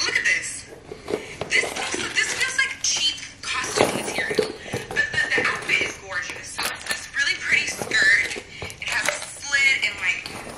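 Small items being handled and taken out of a leather handbag: rustling, crinkling and light clicks and clinks that come and go. A woman's voice is heard in snatches over it, with no clear words.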